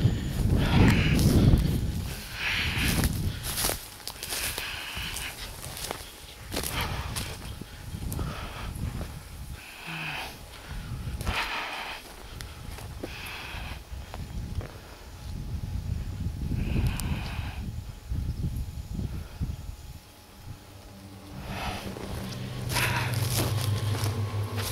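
Footsteps pushing through tall grass at a walking pace, with the stalks swishing and crunching against the walker and the camera in irregular bursts. Music comes in near the end.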